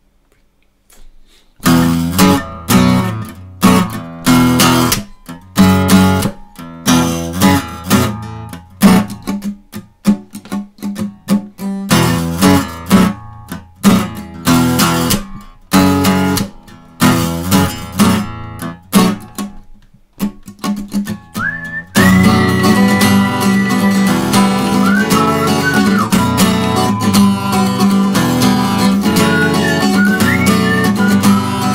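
Acoustic guitar playing short, hard-strummed chords broken by abrupt stops, starting about a second and a half in. Around twenty-two seconds the strumming becomes continuous, and a high held melody line with pitch bends joins it.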